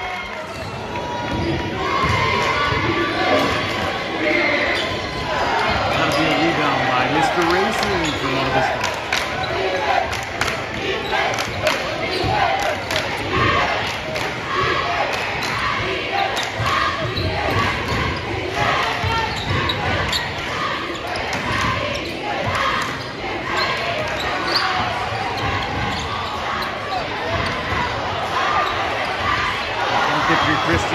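A basketball bouncing and being dribbled on a hardwood gym floor, sharp repeated knocks echoing in a large hall, over the shouts and chatter of players and spectators.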